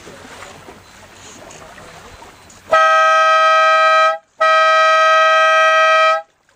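Race-start horn giving the starting signal: two loud, steady blasts, the first about a second and a half long and the second slightly longer, with a short break between. Before them there is a low hiss of wind and water.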